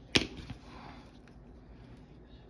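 A single sharp click, the loudest sound, followed by a fainter click about a third of a second later, then low room noise.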